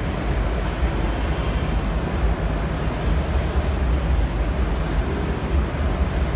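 Steady low rumble with an even hiss over it, the background noise of a large exhibition hall, with no distinct events.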